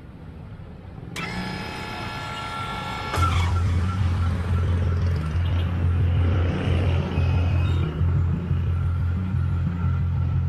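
Street traffic of motorcycle tricycles. A steady ringing tone sounds for about two seconds near the start. From about three seconds in there is a loud, steady low throb.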